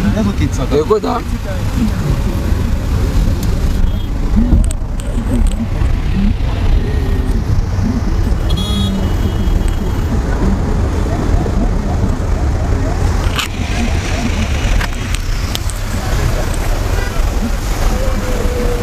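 Steady low rumble of a car driving, heard from inside the vehicle, with faint voices in the background and a brief high tone about halfway through.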